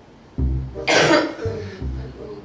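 A woman coughs once, about a second in, over quiet background music.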